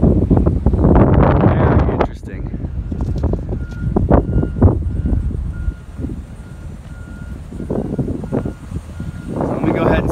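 A vehicle's reversing alarm beeping at one steady pitch, about two beeps a second, from about three seconds in until near the end. Under it, wind buffeting the microphone, loudest in the first two seconds.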